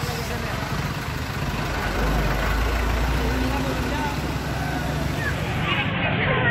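A motor vehicle's engine running low, the rumble deepening for a few seconds in the middle, over a steady hiss of outdoor street noise with faint voices.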